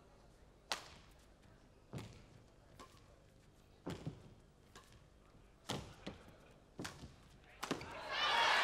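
Badminton rally: rackets striking the shuttlecock, sharp short hits about a second apart, seven or so, with two in quick succession near the end.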